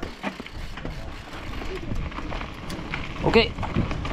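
A Rose Soul Fire mountain bike rolling along a dirt trail: steady tyre noise on the dirt, with light clicks and rattles from the bike.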